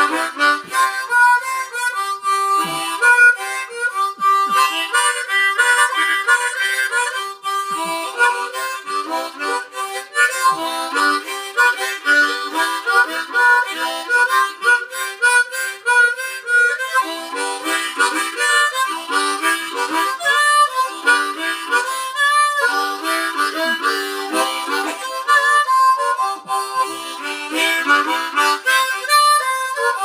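Harmonica played solo in a blues style, cupped in the hands together with a corded microphone: a steady rhythmic run of short chords and single notes with no backing.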